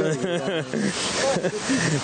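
A man's speaking voice holding a long, drawn-out vowel, which breaks off about half a second in into roughly a second of steady hiss with faint voice underneath.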